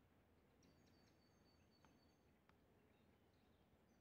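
Near silence, with faint high bird calls in the first half.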